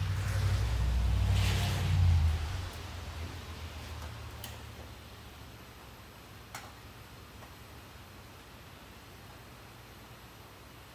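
Handling noise and rustling from the camera phone being moved for the first couple of seconds, then quiet garage room tone with two light clicks.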